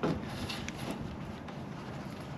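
Handling noise from gloved hands on a small action camera fitted with a furry windscreen: a few faint clicks and some rubbing over a low steady hiss.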